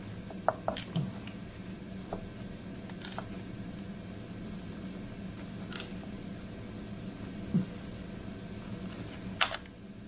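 A few light metallic clicks and scrapes spread out, from a hand tool turning bolts down on an engine's cam cover, over a steady low hum.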